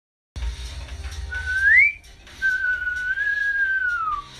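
A person whistling: a short note that slides upward, then after a brief break a longer held note that wavers a little and sinks away at the end, over a low room rumble.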